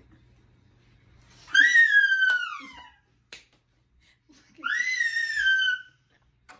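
Two high-pitched vocal squeals, each about a second long and sliding down in pitch, with a short sharp click during the first.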